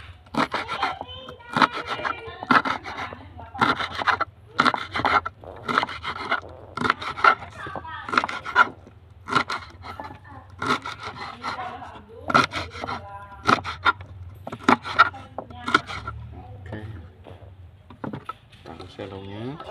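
Kitchen knife chopping young selong pods on a wooden cutting board, a steady run of sharp cuts about two a second, each blade stroke knocking on the board.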